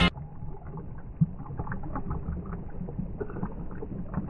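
Thick green juice being poured from a glass into a glass mason jar: a low, continuous pouring and splashing sound, with a brief knock about a second in.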